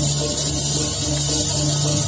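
Balinese gamelan music playing steadily to accompany a sacred barong dance, with held low notes under a constant high shimmer.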